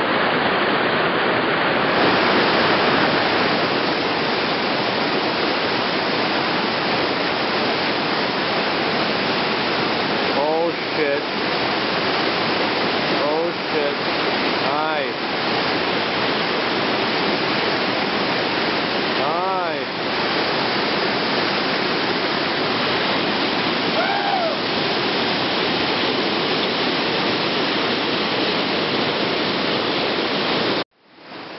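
Whitewater rapids rushing steadily over rocks, with a person's voice calling out briefly over the water about five times, around 10, 13, 15, 19 and 24 seconds in.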